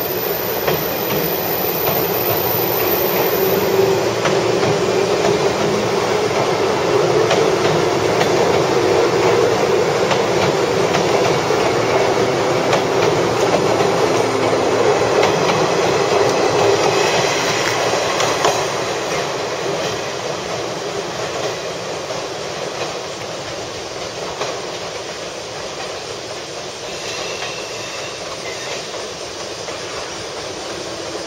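Electric commuter train pulling out and running past along the platform, wheels clacking over the rail joints. It is loudest through the first half, then fades after about two-thirds of the way through as the train draws away down the line.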